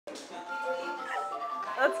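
Portable electronic keyboard playing a simple melody in clean, held electronic tones, one note giving way to the next every fraction of a second. A voice shouts "Let's go!" just before the end.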